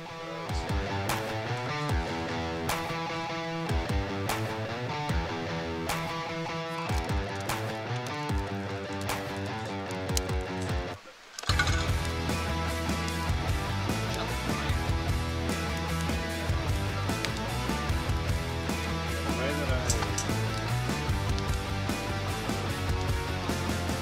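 Background music led by guitar, steady and rhythmic. It drops out briefly just before halfway through and comes back with a heavier low end.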